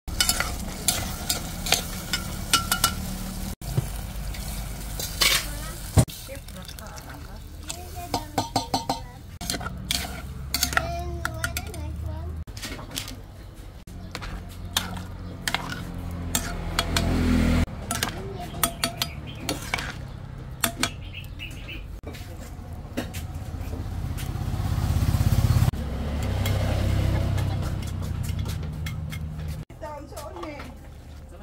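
A spatula stirring and scraping in a metal cooking pot of sardines and vegetables in tomato sauce, with many sharp clicks and knocks against the pot over the sizzle of the cooking food. A low rumble comes and goes and grows louder late on.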